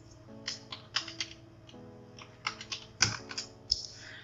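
Computer keyboard keys clicking in two short runs of typing, over soft background music.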